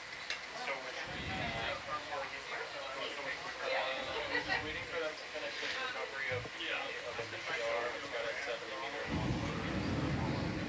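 Indistinct voices talking in the background, with a faint steady hum underneath.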